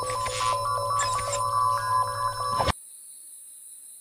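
Electronic beeping sound effect of a cartoon Omnitrix watch activating: a quick run of stepping, ringtone-like tones that cuts off suddenly under three seconds in.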